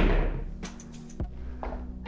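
Pool balls knocking on a table after a hard-hit shot: a loud impact at the start that fades, then a few sharp clicks of ball-on-ball and rail contacts. Quiet background music runs underneath.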